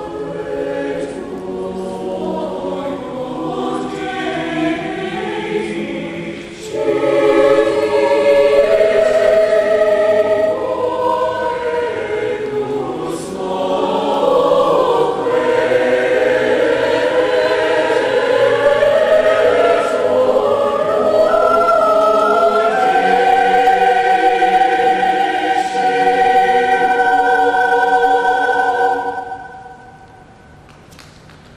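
A large mixed choir singing under a conductor. The singing gets louder about seven seconds in, then settles into long held notes and cuts off together just before the end.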